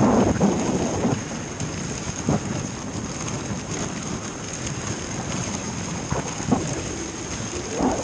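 Dog sled runners hissing steadily over packed snow as the team pulls, with wind rumbling on the microphone and a few light knocks from the sled.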